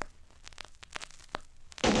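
Surface noise of a 1965 45 rpm vinyl single playing its lead-in groove: irregular clicks and pops. About two seconds in, the record's band music starts.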